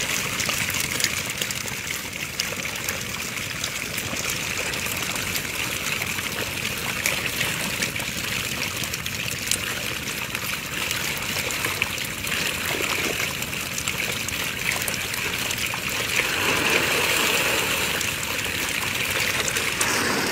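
Shallow water sloshing and splashing steadily around men wading waist-deep while they work a bamboo fence fish trap, with many small quick splashes throughout. It swells louder for a couple of seconds near the end.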